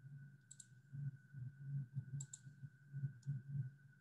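Four light, sharp clicks at a computer: one about half a second in, two close together a little past two seconds, and one just past three seconds. Under them run a faint steady high whine and a low hum.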